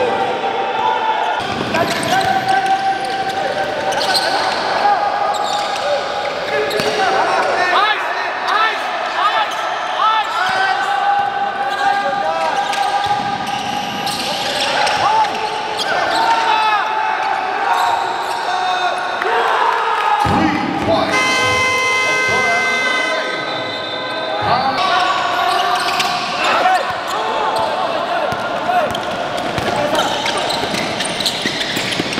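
A basketball being dribbled on a hardwood court, with sneakers squeaking and players' voices. About two-thirds of the way through, a held tone sounds for a couple of seconds.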